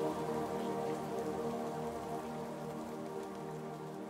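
Soft ambient meditation music of held, sustained notes laid over a steady hiss of falling rain, the whole slowly fading in level.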